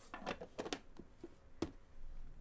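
Light handling sounds of objects on a wooden cutting board, with one sharp knock a little over one and a half seconds in.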